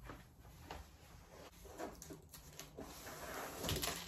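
Faint scattered knocks and rustling of objects being handled, with a louder cluster of clicks near the end.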